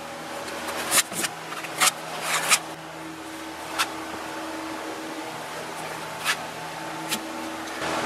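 Small plastic spreader working Bondo body filler over a metal quarter panel: a few short, scattered scrapes over a steady low hum.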